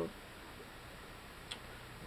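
Quiet room noise with a single light click about one and a half seconds in, from the handmade journal being handled.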